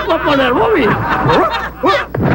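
A man laughing in a drunk character's wavering cackle, his voice swooping up and down in pitch, with a short break near the end.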